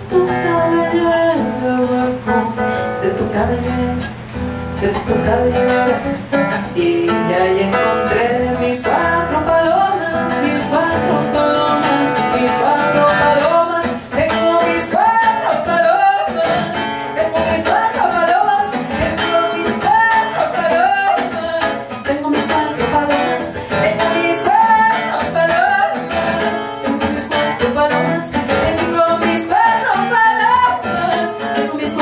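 Live music: a woman singing into a microphone, her voice sliding between notes, over plucked string accompaniment with many quick, sharp notes.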